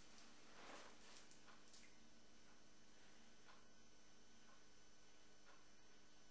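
Near silence: a steady faint hiss and hum of room tone, with a few soft faint brushing sounds in the first two seconds.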